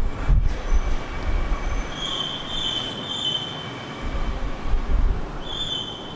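A steady rumbling noise with a thin, high-pitched squeal over it, first for about a second and a half starting two seconds in and again near the end.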